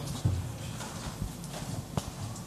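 Handling noises and footsteps of a man rising from a table and walking away: a dull thud about a quarter second in, then light knocks and shuffling.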